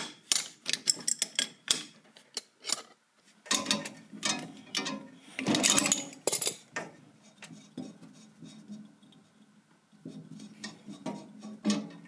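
Metal wrench and gas pipe fittings clicking, clinking and scraping as a fitting is worked onto corrugated stainless steel gas tubing. A quick run of sharp clicks comes in the first few seconds, then rubbing and clanking of metal parts.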